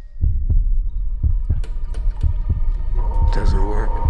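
A slow, heartbeat-like pulse of low thuds, roughly in pairs at about one pair a second, over a steady hum. This is trailer sound design. A voice comes in near the end.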